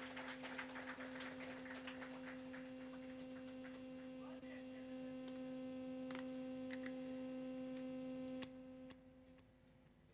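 A faint, steady electric hum with a higher overtone from the stage amplification, with scattered faint clicks, left ringing at the end of a piece. It cuts off abruptly about eight and a half seconds in, dropping to near silence.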